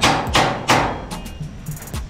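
Hammer blows at a steady pace of nearly three a second, stopping a little under a second in.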